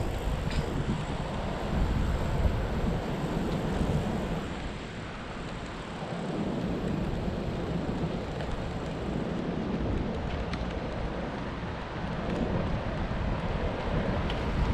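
Wind buffeting the microphone of a camera on a moving bicycle, a steady low rumble of riding along city pavement. It eases briefly about five seconds in, then picks up again.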